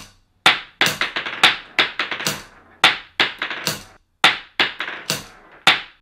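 Steel balls from a mini projectile launcher striking a hard benchtop over and over at the same spot: about a dozen sharp clacks, each trailing off in smaller taps.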